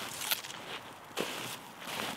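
Footsteps of motocross boots walking in snow, a few separate steps.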